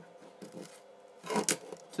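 A single sharp click about one and a half seconds in, as the hand-held aluminium plough blade is moved on its cupboard hinge. It is otherwise quiet.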